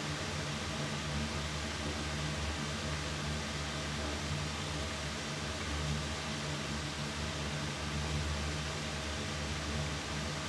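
Electric fan running steadily: a low hum under an even hiss.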